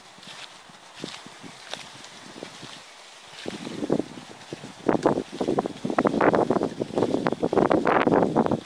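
Wind buffeting a handheld camera's microphone in loud, irregular gusts that set in about three and a half seconds in, over light footsteps on sand earlier on.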